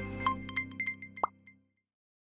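Short electronic logo jingle with clicking, chiming accents and a quick rising pop about a second in, fading out by about a second and a half in.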